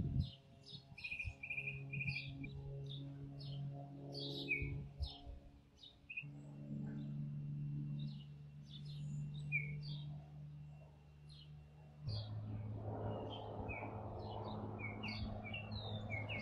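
Small birds chirping and calling with short, high notes all through, over a low steady hum that shifts in pitch about six and twelve seconds in. From about twelve seconds in, the rustle of wind in leaves rises.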